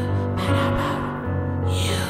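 Piano backing playing chords over held low notes, with breathy vocal gasps from the singer, one sweeping down in pitch near the end.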